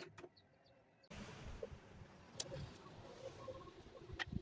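A few faint, sharp clicks of thin steel rods being handled on a wooden workbench, over low steady background noise.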